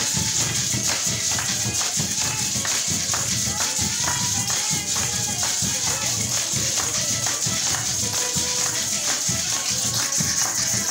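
Venezuelan Christmas parranda played on a hand drum and maracas, the drum keeping a steady beat under a constant shaking of maracas, with voices singing along.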